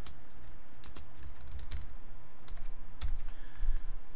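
Typing on a computer keyboard: a short run of separate keystrokes as a word is typed.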